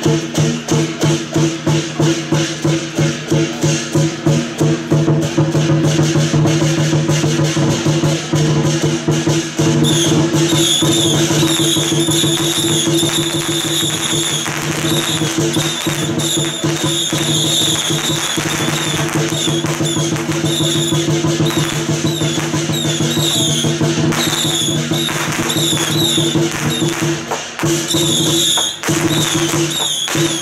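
Chinese lion-dance percussion: a drum, gongs and cymbals beat a fast, steady rhythm over a sustained gong-like ring, with firecrackers crackling. About ten seconds in, a high wavering melodic line joins it.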